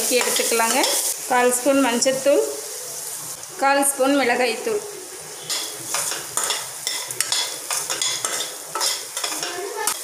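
Diced carrot and beans sizzling in oil in a stainless steel kadai while a metal spoon stirs them, scraping and clicking against the pan many times, mostly in the second half.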